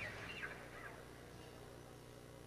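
The band's music has just ended, leaving a faint wavering high-pitched call or two in the first second, then low hum and room noise.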